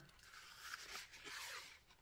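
Faint rustling and scraping of a clear plastic card holder sliding out of a cardboard box sleeve.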